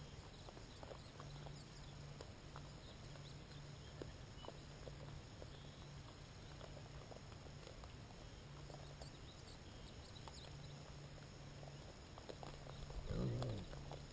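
Wild hogs feeding at a corn feeder: faint scattered clicks and rustles. About a second before the end, one hog gives a short, louder call whose pitch bends.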